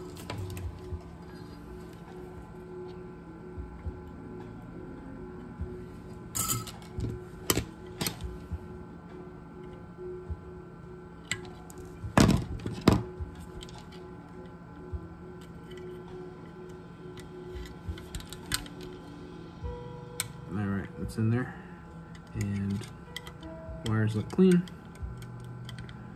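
Small sharp clicks and taps of metal hand tools against wiring and hardware inside a metal guitar-pedal enclosure, scattered over a steady low hum.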